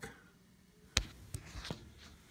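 A single sharp click about a second in, followed by two fainter ticks, over quiet room tone.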